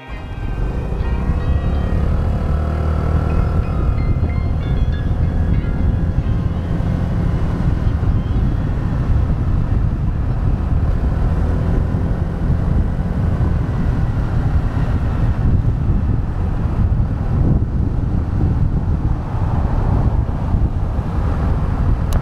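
Honda Navi scooter riding along a street: a loud, steady low rumble of wind on the microphone, with the small single-cylinder engine and road noise underneath.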